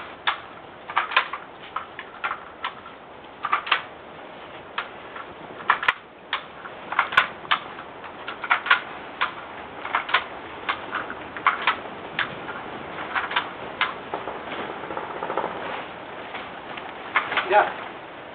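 Sharp clicks from a hand-held Rubangel tomato-tying tool, coming irregularly about once or twice a second as tomato plants are tied one after another to their guide strings.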